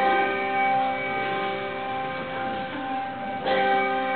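A bell struck twice, about three and a half seconds apart. Each stroke rings on as a chord of several steady tones.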